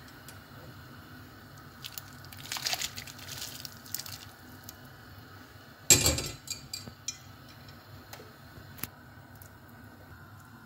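Wet squishing and light splashing as pieces of boiled beef tripe go into a pot of broth, in soft patches, with one sharp knock about six seconds in and a few small clicks after it.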